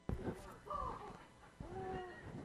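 Faint, indistinct voices of people in a hall, with short pitched vocal sounds about a second in and again near the end, and a click at the very start.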